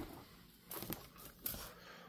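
Faint handling noise from a leather belt strap being moved and turned in the hands: two soft rustles, about a second in and again near the end.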